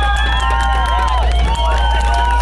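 Music with long held notes mixed with the voices and cheers of an outdoor crowd.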